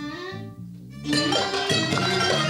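Live studio band music: a few soft held low notes, then about a second in the whole band comes in loudly.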